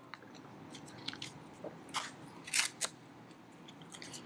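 Small foil sachet of silicone grease being torn open by hand: a few scattered crinkles and tearing crackles, the loudest a little over halfway through.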